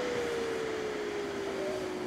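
Ninja Foodi Max grill's fan whirring with its lid open, a faint tone falling slowly in pitch as the fan winds down.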